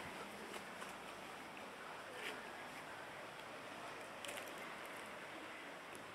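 Faint, steady outdoor background hiss with a few soft, light clicks scattered through it.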